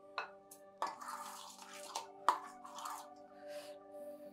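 A steel spoon clinking and scraping against a steel bowl as flour and hot water are stirred into a dough, with a sharp clink a little past two seconds in. Soft background music with held tones plays under it.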